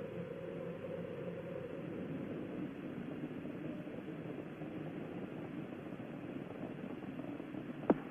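Space Shuttle Challenger's rocket exhaust during ascent: a steady, even rumble of noise heard through narrow, band-limited broadcast audio.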